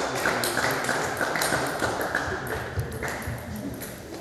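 Table tennis rally: the plastic ball clicking off bats and table about three times a second, ending about three seconds in.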